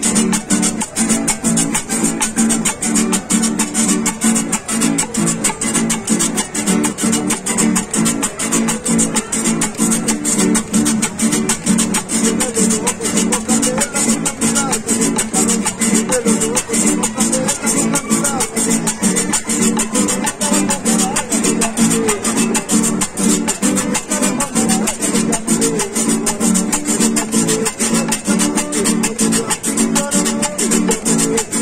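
Two acoustic guitars strummed together in a steady Latin dance rhythm, with a metal güira scraper rasped on every beat.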